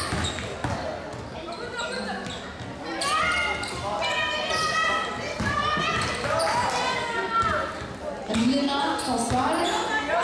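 A basketball bouncing on an indoor court during play, with players' voices calling out, in the echo of a large sports hall.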